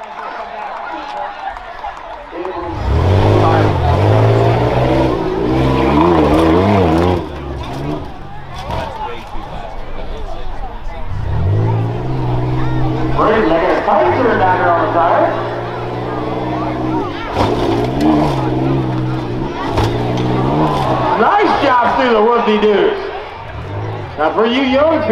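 Tough-truck engine revving hard in three long bursts, its pitch climbing and dropping, the first starting a couple of seconds in.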